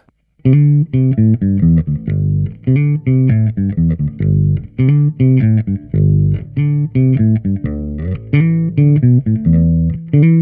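Electric bass, a Gibson ES-Les Paul Bass, played through a Trace Elliot Elf 200-watt bass head and 1x10 cabinet with the amp's treble turned up to about three o'clock. It plays a riff of short plucked notes with a few held ones, starting about half a second in.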